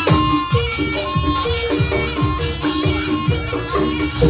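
Javanese jaranan-style traditional music: a nasal reed shawm plays a held, stepping melody over drum strokes that fall in pitch, about two a second.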